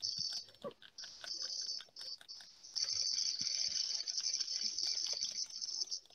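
Scattered quiet clicks and taps of a computer keyboard and mouse, over a faint high-pitched hiss that comes and goes at first and then holds steadily for the second half.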